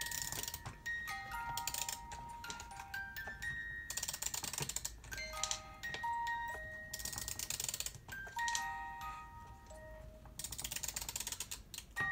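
A wooden robot music box's comb movement plays a slow tune of plucked, bell-like notes. About every few seconds there is a burst of rapid ratchet clicking from its mechanism.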